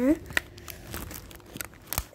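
Plastic film wrapping on an oil-pastel box crinkling as it is handled and pulled at to open it: faint scattered clicks and rustles.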